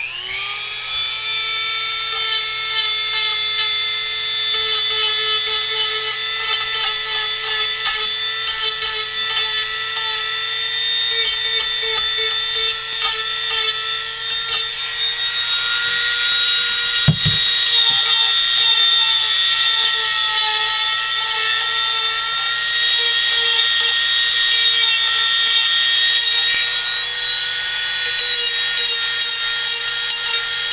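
Handheld rotary tool switched on and spinning up to a steady high whine, its bit grinding and scratching into the wood as it carves. A brief low thump about halfway through.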